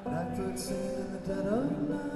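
Live band music between sung lines: acoustic guitar picking with sustained notes, some sliding up in pitch about a second and a half in. There is a brief hiss about half a second in.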